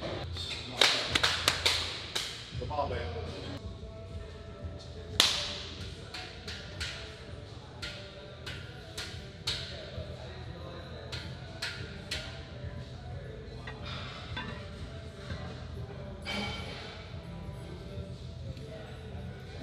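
Gym sounds from a heavily plate-loaded barbell: scattered sharp clanks and clicks of metal, with a cluster about a second in and the loudest about five seconds in, over a low steady hum and faint background music.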